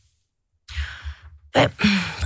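A person's breath into a close studio microphone, about half a second long, after a brief silence, with a low rumble under it, followed by a short spoken "ouais".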